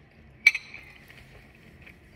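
A metal spoon clinking once against a bowl about half a second in, followed by a few faint small ticks.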